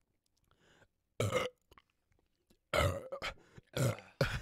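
Belching after chugging a can of beer: a short burp about a second in, then a longer run of burps near the end.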